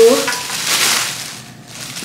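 Plastic grocery bag rustling and crinkling as a can is pulled out of it, fading out after about a second and a half.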